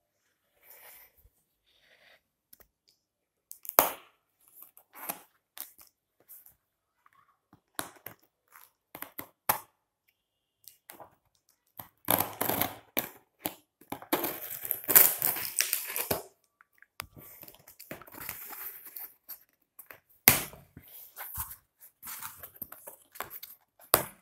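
Cardboard laptop box, its cardboard inserts and plastic wrapping being opened and handled: scattered crinkling, tearing and rustling with a few sharp knocks, busiest around the middle.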